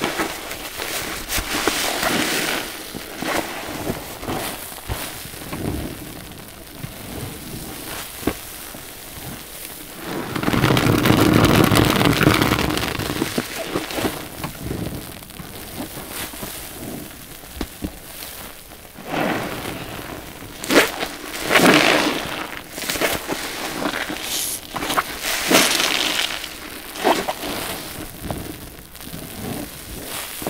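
Sponge soaked with laundry detergent being squeezed and kneaded in a basin of soapy water: wet squelching, sloshing and the crackle of foam. There is one long, loud squeeze about a third of the way in, and several sharp splashy squelches in the second half.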